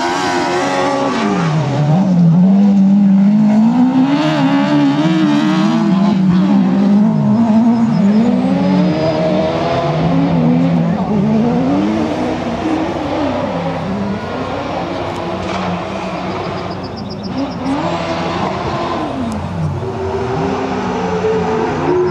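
Autocross race car engines on a dirt track, revving hard and dropping back again and again as the cars accelerate, shift and lift through the corners.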